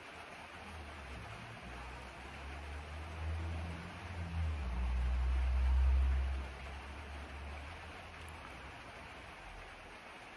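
Steady hiss of rain falling on the shed roof, with a low rumble that swells from about three seconds in, peaks and dies away again a few seconds later.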